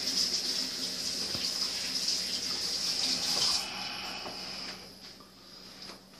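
Kitchen sink faucet running while hands are washed under it, shut off about three and a half seconds in, with a fainter trickle dying away about a second later.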